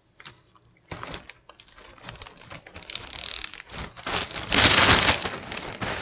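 Zip-top plastic bag holding graham crackers and vanilla wafers crinkling as it is pressed flat and its zipper seal pinched shut, with a run of small clicks. It starts about a second in and is loudest shortly before the end.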